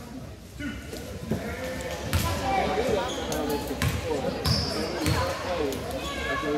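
Basketball bouncing on a hardwood gym floor: several separate bounces from about two seconds in, a player dribbling at the free-throw line before the shot.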